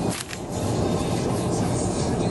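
Steady low road rumble inside a moving car's cabin, with a short rustle at the start.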